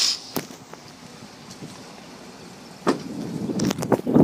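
Low, steady quiet, then about three seconds in a quick series of clicks and knocks from a pickup truck's cab door latch and door opening, with handling rustle as someone climbs out.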